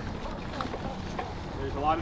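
Wind buffeting the camera microphone over the steady low rumble of a mountain bike rolling along a leaf-covered dirt trail. A voice starts near the end.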